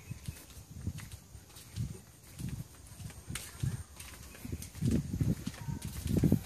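Footsteps on a concrete walkway: soft low thuds at an uneven pace, about one a second, with a few faint clicks between them.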